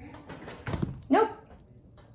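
A small dog shifting about on a padded bed inside a wire crate: soft rustling with a couple of dull thumps just before the middle, then a short spoken "nope".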